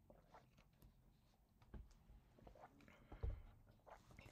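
Faint sips and swallows of water drunk through a straw from a plastic bottle, with a few small clicks and a soft low knock about three seconds in, over near silence.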